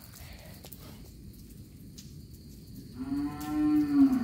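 A cow mooing: one long, low call starting about three seconds in.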